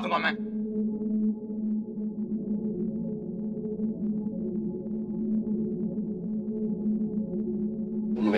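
Dramatic background score: a sustained low synth drone holding a few steady pitches without change.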